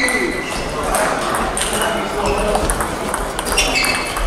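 Table tennis balls clicking off bats and tables in quick, irregular strokes from rallies at several tables at once, over a background of players' voices.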